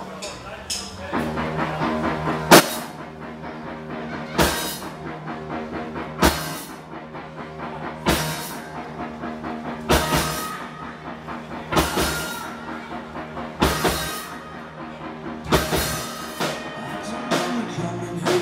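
A live rock band plays an instrumental passage on electric guitars, bass and drum kit, with loud accented hits about every two seconds.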